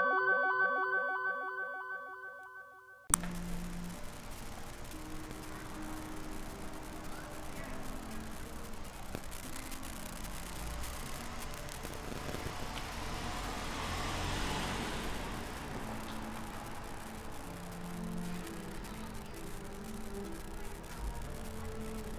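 A music track's last notes ring out and fade over the first three seconds; after a sudden cut, steady outdoor street ambience follows, with a low hum of traffic and a slight swell about midway.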